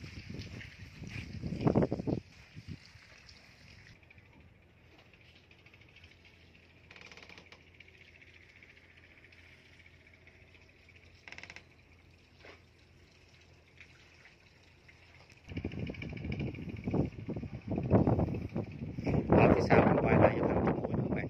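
Wind buffeting the microphone in rough low gusts for the first two seconds and again from about three-quarters of the way in. Between the gusts there is a long quiet stretch of faint steady hiss.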